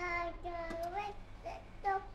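A toddler singing wordlessly in a high voice: a few short, drawn-out notes, some gliding up at the end.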